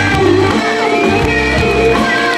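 Live rock band playing an instrumental passage with electric guitar to the fore, over bass notes and a steady beat.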